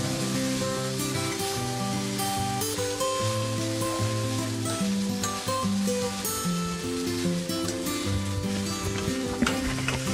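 Vermicelli upma sizzling in a frying pan as it is stirred and tossed with a spatula, with a few light scrapes. Instrumental background music plays over it, its held notes changing every half second or so.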